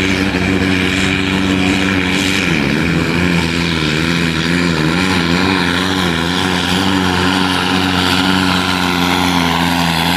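Modified pulling tractor's diesel engine at full power, dragging a weight sled. Its note holds steady, then sags and wavers a few seconds in as the sled's load builds, and runs on lower and steady.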